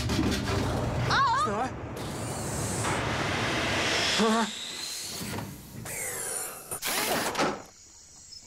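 Cartoon sound effects of a machine starting up: sliding, whirring mechanical noise with short electronic warbles, and a noisy burst near the end.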